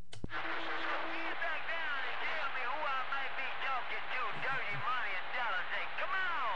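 CB radio receiver hissing with band static, with many faint, garbled distant voices warbling in and out through it, as the operator listens for a reply that does not come through. A sharp click sounds at the start as the transmitter unkeys.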